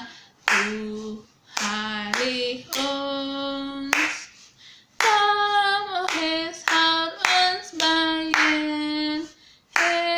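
A woman singing a hymn a cappella, a slow melody of held notes in short phrases with brief breaths between them, with her hands clapping along.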